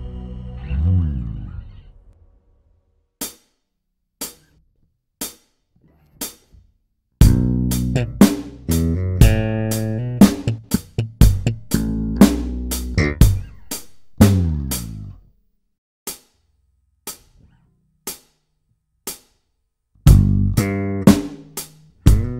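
Electric bass guitar playing a plucked, fingered bass line in phrases over a steady tick about once a second. A held note with a slide down fades out near the start, then ticks alone for a few seconds, a busy bass phrase for about eight seconds, ticks alone again, and the bass comes back near the end.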